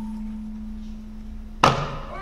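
Traditional Korean dance accompaniment at a pause between phrases: a held low instrumental note fades away. About one and a half seconds in, a single sharp percussion stroke sounds and rings briefly.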